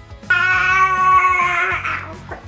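A baby's drawn-out whining cry: one loud held note lasting about a second and a half that sags at the end, over background music.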